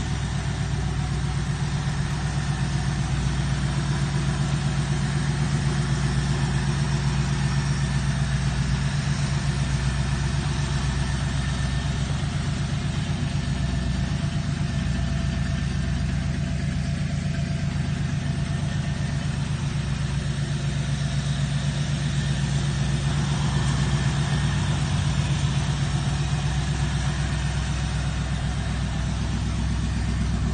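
A 1968 Chevrolet Camaro's 327 V8 idling steadily, a healthy-sounding idle.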